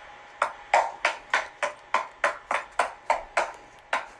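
A steady run of evenly spaced sharp ticks or taps, about three a second, each dying away quickly.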